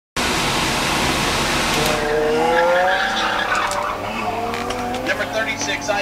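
Car tires squealing through corners on an autocross course: long, wavering squeals over a steady rush of engine and outdoor noise.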